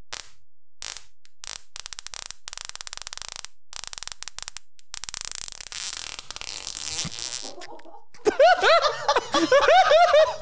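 A person's long fart, going for about eight seconds as a rapid string of sputters. Loud laughter breaks out near the end.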